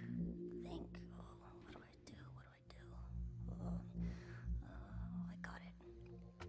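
A soft whispered or breathy voice without clear words over a low, steady drone of background music.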